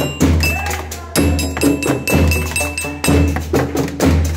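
School percussion ensemble playing: ringing metallophone notes struck with a mallet and hollow knocks of coloured plastic tuned tubes (boomwhackers), over a steady low beat about once a second.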